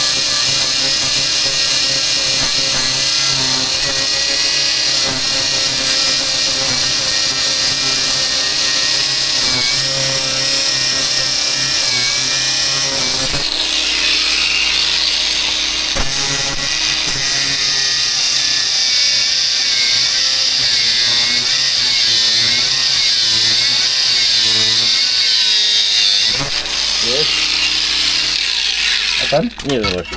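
Cordless angle grinder cutting through a steel reinforcing bar set in reinforced concrete, running continuously under load. Its tone changes about halfway through, and it stops just before the end.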